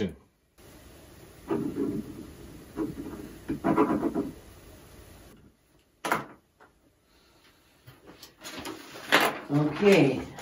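Indistinct, muffled voices in a small room, with a short sharp knock about six seconds in.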